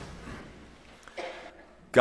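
A single short cough about a second in, against a low steady background hum.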